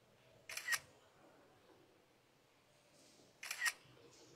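Two sharp double clicks, about three seconds apart, each over in about a quarter of a second.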